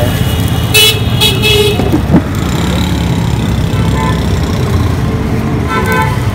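Street traffic: a motor vehicle running steadily, with two short horn toots about a second in.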